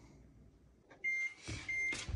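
Hotronix Fusion IQ heat press timer beeping twice to signal the end of the pressing cycle: two short, high, steady beeps over a rushing noise.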